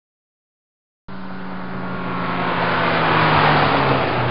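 A car engine sound effect, a vehicle passing by: it starts abruptly about a second in, grows louder to a peak near the end with its pitch dropping slightly, then begins to fade.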